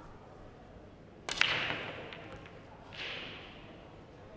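A pool cue strikes the cue ball hard about a second in, a sharp click followed almost at once by the clack of the cue ball hitting the object ball. A softer knock follows about three seconds in as the balls travel the table.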